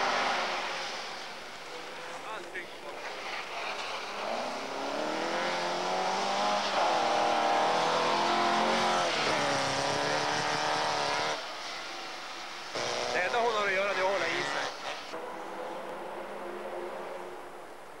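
Volkswagen Beetle rally car's engine revving hard as the car slides through snow, its pitch rising and falling over several seconds. The level drops, a second burst of revving follows, and the sound then fades.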